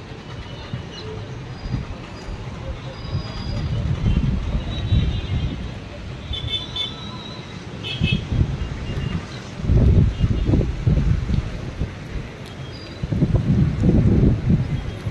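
Wind buffeting the microphone in low, rumbling gusts over a steady outdoor hiss, strongest about four seconds in, from about eight to eleven seconds, and again near the end.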